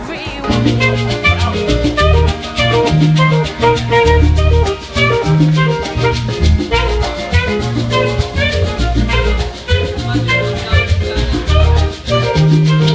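Salsa music played by a live band, with bass, drum kit and percussion keeping a steady beat.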